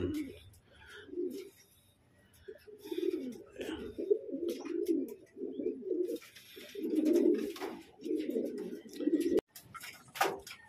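Domestic racing pigeons cooing, low coos in several runs with short gaps between them, breaking off suddenly near the end.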